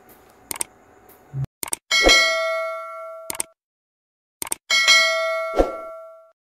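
Sound effect of a subscribe-button animation: short mouse-like clicks followed by a bright bell ding that rings out and fades, heard twice.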